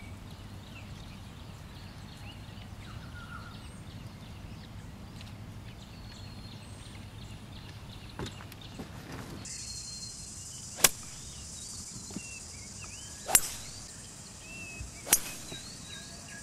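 Outdoor ambience with scattered bird chirps, joined about halfway through by a steady high hiss, broken by three sharp cracks in the second half: golf clubs striking balls, the last just before the golfer is seen in his follow-through.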